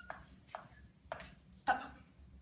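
Chalk striking and scraping on a chalkboard as '5x' is written: about three short strokes, with a brief 'uh' from the writer near the end.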